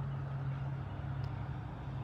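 A steady low mechanical hum, like a motor running, under faint background noise.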